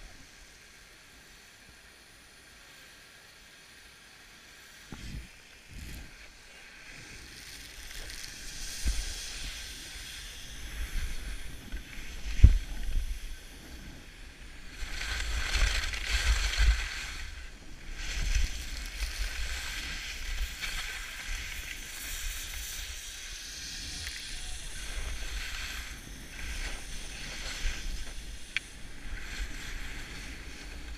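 Skis scraping and hissing over packed snow with wind buffeting the microphone during a fast run down the slope, swelling and fading in waves. The first few seconds are quiet, and there is one sharp knock about twelve seconds in.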